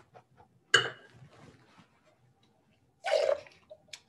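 A wine taster slurping a mouthful of wine, drawing air through it: a sharp sucking sound about a second in that trails off, then a second, shorter burst of mouth noise near the end.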